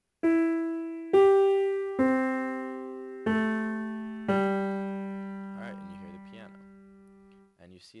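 Sampled grand piano, a software instrument in Reason's NN-XT sampler, playing five notes about a second apart. The notes mostly step lower in pitch, and each is left to ring under the next. The last notes fade out over about three seconds.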